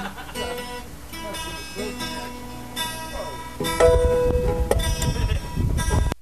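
Acoustic guitar picked a note at a time, then strummed in louder full chords from about two-thirds of the way in.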